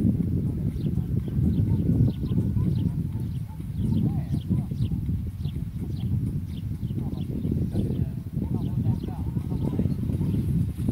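Low, gusting rumble of wind on the microphone, with faint distant voices and short faint high chirps about twice a second.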